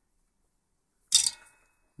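A single short, sharp clink about a second in, with a faint ringing that dies away within half a second: a small hard object knocking on the workbench as solder is picked up.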